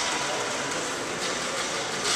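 Steady, even background noise of a large indoor public hall, a broad hiss with no distinct events.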